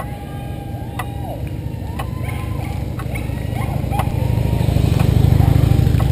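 Engines of a police motorcycle and a pickup truck approaching slowly, their rumble growing louder toward the end. Short tones that rise, hold and fall sound over it, with faint clicks about once a second.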